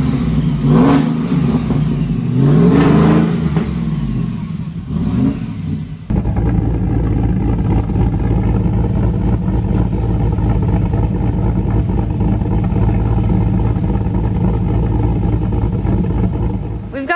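Supercharged 416-cubic-inch stroker V8 of a freshly assembled Goliath 6x6 pickup being revved, its pitch rising and falling over several blips. After a sudden cut about six seconds in, it runs at a steady idle, heard close to its twin exhaust tips.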